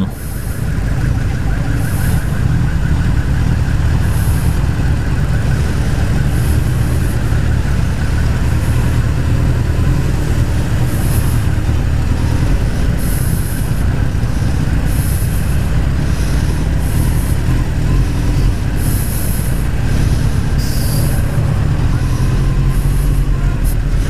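Suzuki GSX-R1000 inline-four engine running at low revs, a steady low drone, as the bike creeps through stopped traffic alongside other motorcycles and a truck; the engine is running hot, at about 82–86 degrees. Short hisses come and go every second or two among the traffic.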